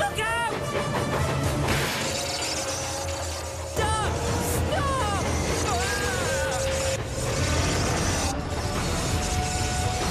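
Background music from an animated children's show, with several short rising-and-falling cries and a steady low rumble underneath.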